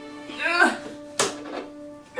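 Soft background music under a sick girl's moaning groan, falling in pitch, about half a second in, then one sharp knock just after a second in.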